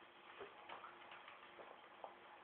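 Near silence: a few faint, scattered soft ticks over quiet room tone.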